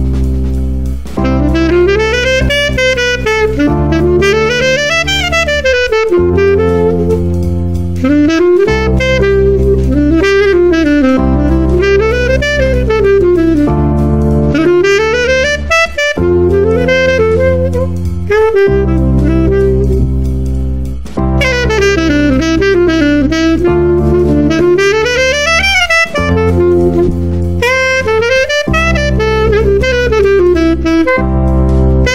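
Saxophone running scales up and down over sustained backing chords that change about every two seconds: the mode that belongs to each diatonic chord of C major, such as Ionian over Cmaj7 and Dorian over Dm7.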